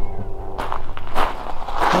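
Footsteps on gravel and pavement, about one step every 0.6 seconds, over a low rumble.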